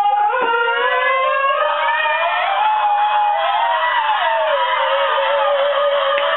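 A male voice singing long, wordless drawn-out notes that slide slowly up and down in pitch, settling on a lower held note about halfway through.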